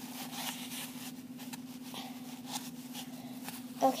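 Faint rustling and scattered light clicks of hands handling cardboard tubes and toilet paper close to the microphone, over a steady hum.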